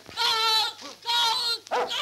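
A dog howling in drawn-out, wavering high cries, one after another.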